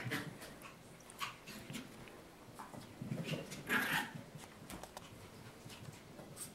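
A Maltese puppy playing with a ball on carpet: a few short dog sounds, the loudest just before four seconds in, among light taps and scuffs of paws and ball.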